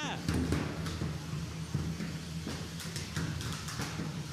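Sharp knocks and clattering of 3 lb combat robots striking each other, over a steady low hum.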